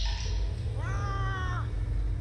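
A rider's high-pitched squeal, rising then falling in pitch, about a second in, over a steady low rumble of wind on the microphone; a short hiss right at the start.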